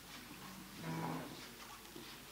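A chair dragged across a stage floor, giving one short, low groaning scrape about a second in, against a quiet hall.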